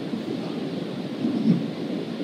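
Steady low rumbling room noise, with a brief swell about one and a half seconds in.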